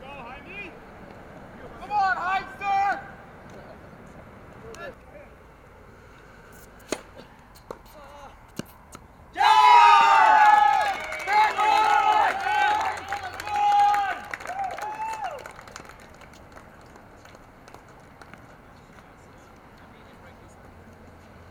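Several people shouting and cheering in high, excited voices for about six seconds in the middle, after a shorter burst of shouts a couple of seconds in. Two sharp knocks come shortly before the cheering.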